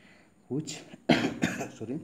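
A man coughing, with a sharp cough about a second in, amid bits of his own speech.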